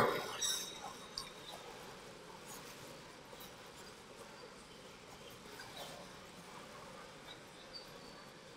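Faint hall room noise, a low even hiss with a few scattered soft clicks, after the reverberation of an amplified voice dies away in the first half second.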